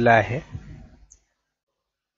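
A narrator's voice finishing a phrase in the first half second and trailing off, then dead silence where the sound track drops to nothing for the last second or so.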